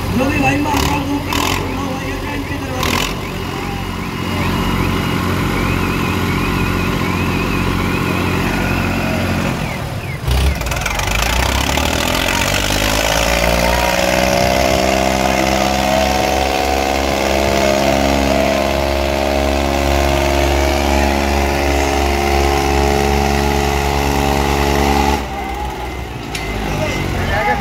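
Tractor diesel engines in a tug-of-war pull. For the first ten seconds they run steadily, then the revs climb and are held high under load until they fall away near the end, with voices over them.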